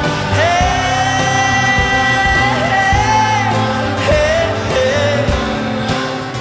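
Live pop-rock band playing with a singer holding one long sung note, which ends about halfway through; shorter sung phrases follow.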